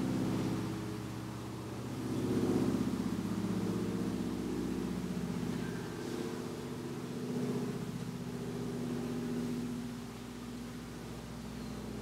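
A low, steady mechanical hum that swells and fades slowly a few times, like an engine running.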